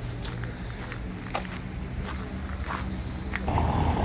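Road traffic noise: a steady low engine hum from vehicles, turning suddenly louder and busier near the end as the street with passing cars comes in. Very noisy because of the traffic.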